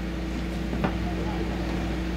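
A pause between spoken words, filled with a steady low electrical hum and background noise, with one faint click a little under a second in.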